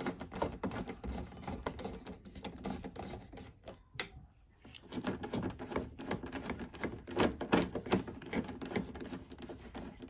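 Screwdriver backing out Phillips head screws from the scooter's front panel, a rapid run of small clicks. The clicking breaks off for about a second near the four-second mark, then starts again on the second screw.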